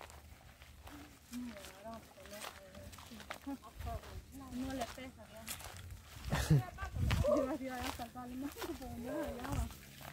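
Quiet, indistinct talk among people walking, with a few low thumps, likely footsteps or handling of the camera.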